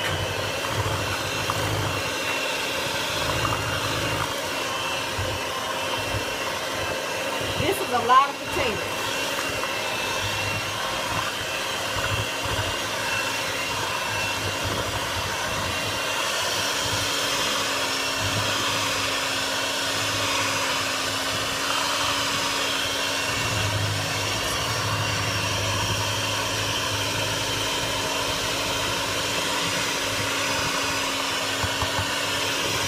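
Electric hand mixer running steadily, its beaters working boiled sweet potatoes into pie filling in a metal bowl. A brief louder clatter comes about eight seconds in.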